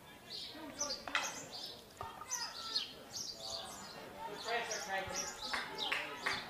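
Field hockey match ambience: distant voices and bird chirps, with sharp knocks of stick on ball about one and two seconds in.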